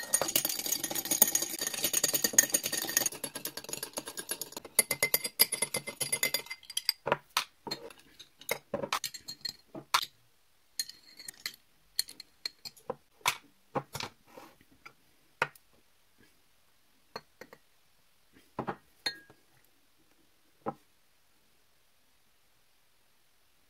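Metal teaspoon clinking rapidly against the inside of a drinking glass, stirring Skittles in a spoonful of hot water for about six seconds. After that come separate clinks and taps of the spoon on the glasses as Skittles are lifted out, growing sparser toward the end.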